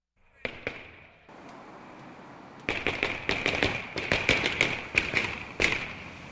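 Firecrackers and fireworks going off outdoors in rapid, irregular sharp bangs, several a second, starting about a third of the way in, over a steady high-pitched tone. Before the bangs there is a short stretch of steady hiss.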